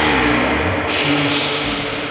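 A loud, harsh burst of noise with low tones under it, starting suddenly just before and slowly fading away.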